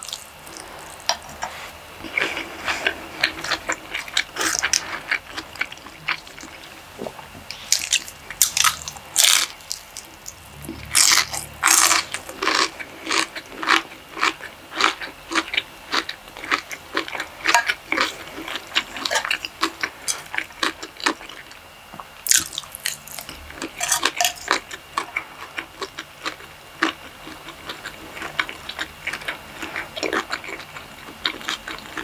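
Close-miked eating sounds: wet chewing, lip smacks and mouth clicks from mouthfuls of takeout Chinese food. They come in a quick, uneven run, loudest in clusters about eight to twelve seconds in and again around twenty-three seconds.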